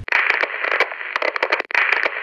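Crackling, hissing static like an untuned radio, thick with rapid clicks, cutting in suddenly and dropping out for a moment shortly before the end.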